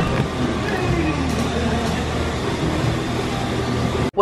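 Busy shop ambience: indistinct background voices over a steady low hum.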